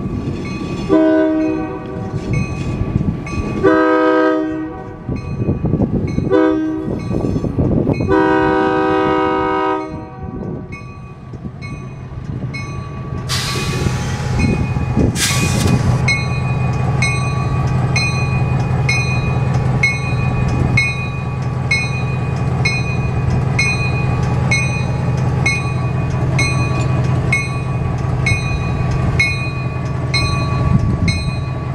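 EMD MP15AC switcher locomotive sounding its air horn in four blasts, the last one long, for a road grade crossing, over the steady ringing of the crossing-signal bell. A couple of sharp clanks follow as it reaches the crossing, then its 12-cylinder two-stroke EMD 645 diesel runs steadily as it rolls through.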